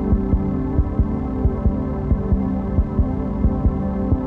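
Background soundtrack music: a sustained low synth drone with a pulse of low thumps about three times a second.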